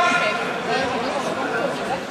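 Several voices of spectators and coaches calling out and talking over one another, with a loud shout at the start and a steady crowd murmur underneath.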